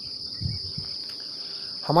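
A steady, high-pitched chorus of insects, unbroken throughout.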